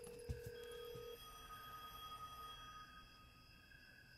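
Faint steady telephone line tones: a low held tone stops about a second in, overlapped by higher steady electronic tones that fade out near the end.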